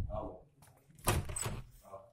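Wooden door with a metal lever handle being opened: a knock as the handle is worked at the start, then a louder clatter about a second in as the door moves.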